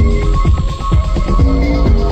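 Early-1990s techno DJ mix: a steady electronic kick drum pulses under a synth riff of short held notes stepping between pitches, with a sustained high synth tone above.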